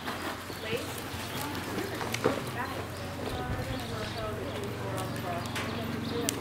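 Horses' hoofbeats on soft dirt arena footing, with people's voices talking in the background and a sharp click a little over two seconds in.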